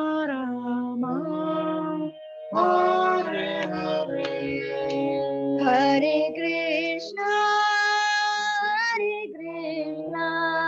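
A girl singing a devotional kirtan melody, holding long notes, while she accompanies herself on a harmonium's sustained chords. There is a short break in the singing a little after two seconds in.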